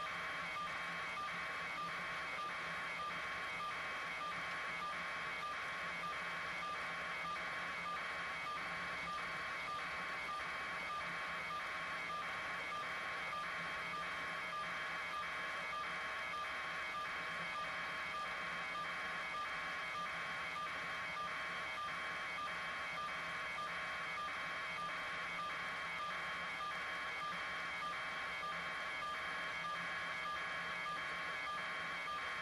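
A steady electronic pulsing tone, repeating evenly about three pulses every two seconds, over a constant electronic hum.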